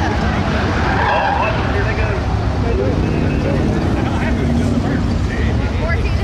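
A pack of Ford Crown Victoria race cars with their V8 engines running hard together as they take a turn, a steady loud engine drone.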